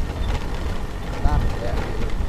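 Motorcycle ride: a steady low rumble of the engine and wind buffeting the microphone, with a few brief voices.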